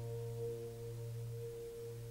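Title music: a held chord of several ringing tones, slowly fading out.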